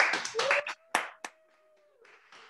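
Hand clapping heard over a video call: a quick run of claps in the first moments, then two single claps about a second in, trailing off. A faint steady held tone sits under the second half.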